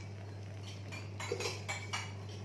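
A metal serving spoon scraping and clinking against a frying pan and a steel plate as food is served, with a few light clinks in the second half.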